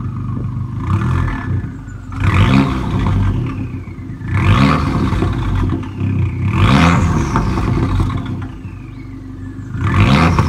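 Abarth 595 Competizione's 1.4-litre turbocharged four-cylinder engine, heard at its twin-tip Record Monza exhaust, idling and being revved repeatedly. The revs come about every two seconds, each rising quickly and dropping back to idle, with a faint whistle falling away after each.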